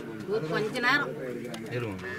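Indistinct talking by people close by, a little quieter than the surrounding conversation.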